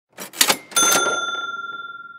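Logo sting sound effect: a couple of quick swishing clicks, then a bright bell-like ding under a second in that rings on a single clear tone and fades slowly.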